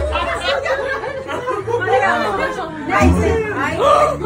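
Several people talking and chattering over one another, no single voice clear.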